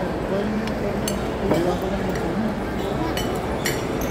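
Metal cutlery clinking against a ceramic plate a few times as meat is pulled apart, over a murmur of voices.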